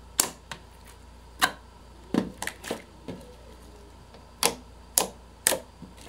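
Fingers pressing and poking slime, pushing air out of it in a series of sharp clicking pops, about nine, spaced irregularly.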